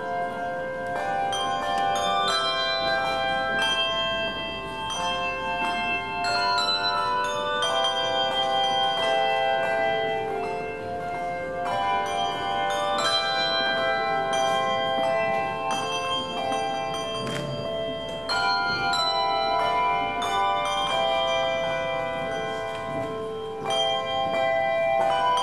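Bell music: a slow melody of struck bell notes, each ringing on and overlapping the next.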